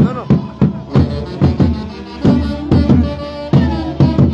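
Central Peruvian orquesta típica playing a santiago: a painted hand-held drum strikes two to three times a second, loudest of all, under held saxophone and clarinet lines with a violin.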